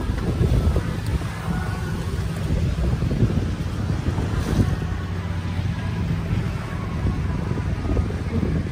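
Wind buffeting the microphone over open sea, with choppy water against the boat and a low steady hum underneath.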